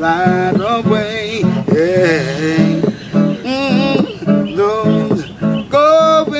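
A man singing a reggae song in a gliding, held melody over his own acoustic guitar, strummed in a steady rhythm.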